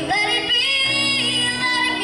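A young girl singing a slow melody with long held notes, accompanied by sustained chords on a Yamaha digital keyboard.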